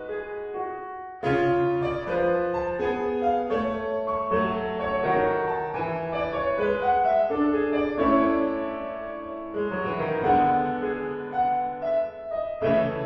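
Solo piano playing a ballad in A major; after a brief softening, a louder passage comes in sharply about a second in and the playing carries on steadily.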